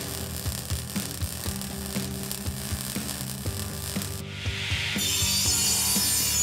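Tool sound effects of an attack on a metal cash machine: scraping, rasping tool noise with light repeated clicks, turning into a harsher grinding hiss about four seconds in, over soft background music.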